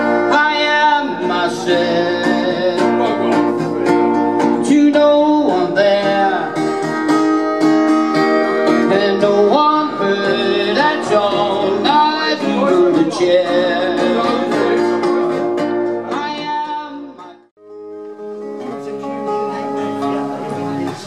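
Live acoustic guitar strummed with a man singing, played loud through the whole stretch. About seventeen seconds in it cuts off suddenly, and guitar playing of a different piece starts up.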